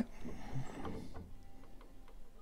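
A few faint, light clicks from a c.1870 Hagspiel grand piano action as a hammer is lifted by hand, over quiet room tone.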